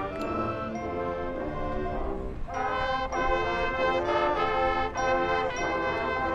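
High school marching band playing held brass chords. The sound breaks off briefly about two seconds in, then the next chord comes in.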